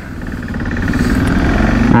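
Motorcycle engine with wind noise from an on-bike camera, growing steadily louder as the bike accelerates.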